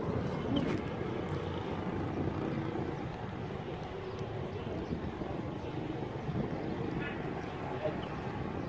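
Open-air ambience: a steady low rumble with faint, indistinct voices of people nearby.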